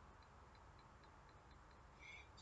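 Near silence: faint room tone with soft, regular ticks about three a second.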